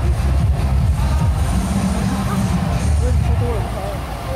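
Loud, bass-heavy music played over loudspeakers, with voices of the street crowd mixed in.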